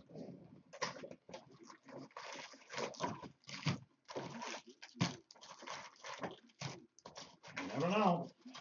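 Cardboard trading-card boxes and foil-wrapped card packs being handled and a box torn open: a run of irregular crinkles, rustles and scrapes.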